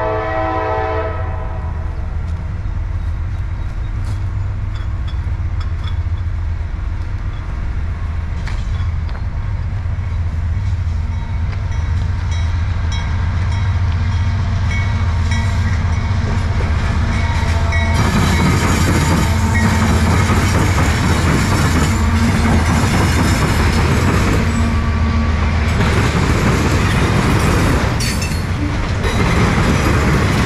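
CSX freight train passing: the locomotive horn blast dies away about a second in, over the steady rumble of the diesel locomotives. From about two-thirds of the way through, the wheel and rail noise of the autorack cars rolling by grows louder, with sharp clacks of wheels over the rail joints.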